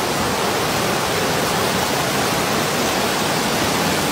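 Swollen, muddy stream in flood rushing past: a steady, loud rush of turbulent water.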